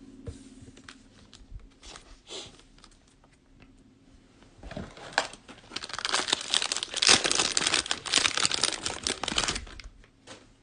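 Plastic cellophane wrapper of a 2020-21 NBA Hoops cello pack being torn open and crinkled by hand, a dense crackling that starts about halfway in and lasts about five seconds. Before it, only a few soft clicks.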